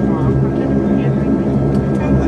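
Saab 340B+ turboprop engine and propeller running steadily while the aircraft taxis, heard inside the cabin beside the engine: a steady low propeller drone with a thin, steady whine above it.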